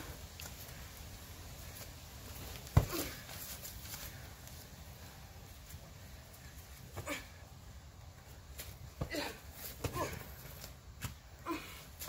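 Pillows whacking during a pillow fight: one sharp smack about three seconds in, the loudest, then several lighter hits in the second half, with short vocal cries near the hits.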